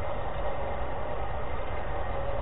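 Steady background noise with a low rumble and hiss, the noise floor of a low-fidelity recording, with no distinct event.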